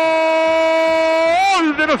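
A radio football commentator's long drawn-out goal cry, one 'gol' held on a single steady pitch, the standard celebration of a goal. It breaks off about one and a half seconds in and turns into rapid talk.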